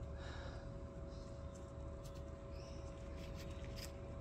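Quiet steady hum with a few faint handling sounds from gloved hands turning over rusty bolts and a nut, mostly in the second half.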